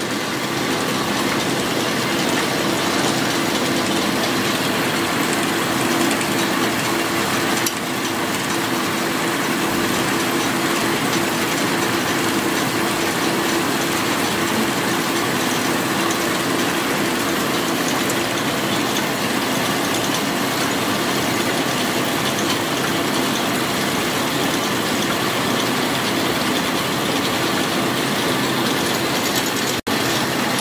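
Textile doubling machines running: a steady, loud whirr of many spinning spindles and their drive gear, with a constant low hum underneath.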